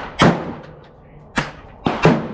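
Gunshots at a shooting range: three sharp reports with short echoing tails, the loudest a fraction of a second in, then two fainter ones close together about a second and a half in.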